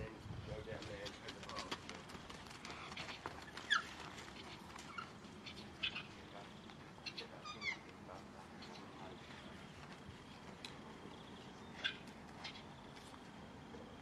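Lowland tapirs giving short, high squeaking whistles that slide downward in pitch, a few at a time spread over several seconds, against faint background noise and scattered clicks.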